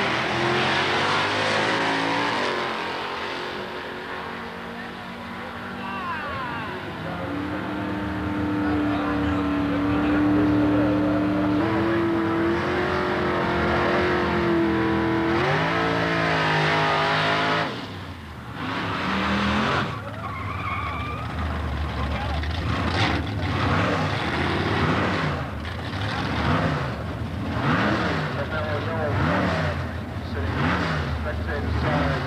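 Drag-race V8 engines at full noise: a 1971 Chevelle's engine held at high revs through a burnout, with tyre squeal, for about ten seconds before it cuts off. It is followed by a string of throttle blips that rise and fall about every second and a half as the car creeps up to stage.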